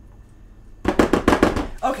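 A quick run of sharp knocks, about ten in a second, lasting roughly a second, from a spatula working against a stainless steel mixing bowl.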